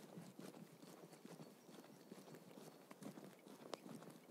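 Near silence, with faint, irregular clicks and light crackle.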